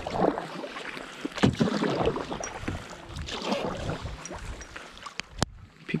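Canoe paddle strokes pulling through lake water, swishing and splashing in uneven swells about once a second. A single sharp click sounds near the end.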